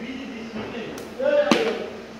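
Two sharp knocks at a wheel on a computer wheel balancer while a balance weight is being fitted to the rim: a light click about a second in, then a much louder knock half a second later.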